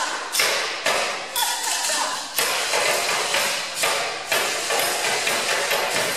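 Rhythmic percussion beat, about two sharp strikes a second, each hit fading before the next.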